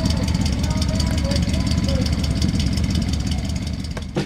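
1975 Dodge B100 van's engine running with a steady, low, pulsing rumble.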